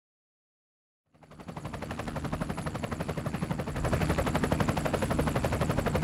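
Helicopter rotor blades chopping in a rapid, even beat, with a thin high turbine whine, fading in after about a second of silence and growing louder.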